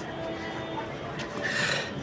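A short rustling scrape about one and a half seconds in as a cloth-covered jewellery box is handled and its lid opened, over a faint steady background.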